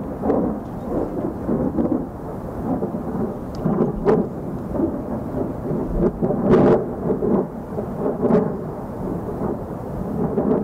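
Loud, gusting roar of wind around a fire tornado whirling through a scrub fire, buffeting the microphone, with a few sharper surges.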